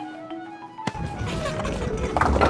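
Light cartoon music with steady notes. A knock comes a little under a second in, then a low rumble as a bowling ball rolls down the lane toward the pins.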